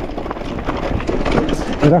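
Electric mountain bike rolling down a dirt trail: tyre noise on loose dirt and small stones, with many short knocks and rattles from the bike over bumps.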